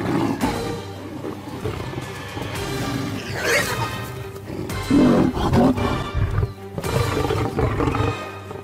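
Background music with a lion growling several times over it, loudest about five seconds in.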